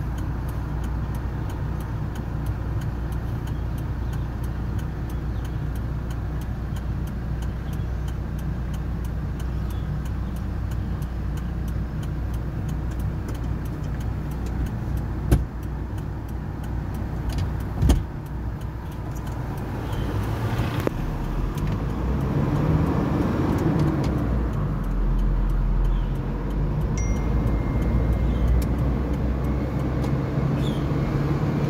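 Kia vehicle's engine and road noise heard from inside the cabin while driving, with two sharp knocks near the middle. In the second half the engine rises in pitch as it accelerates, and a short steady tone sounds near the end.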